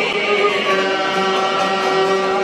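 Albanian folk music: a man singing in long held notes over a bowed violin and long-necked plucked lutes.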